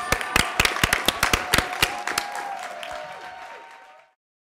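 A small group of people clapping, the individual claps distinct, thinning out after about two seconds as the sound fades away.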